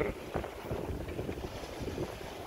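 Wind buffeting the microphone aboard a sailing yacht: a steady low rumble with a faint hiss, and a brief thump about a third of a second in.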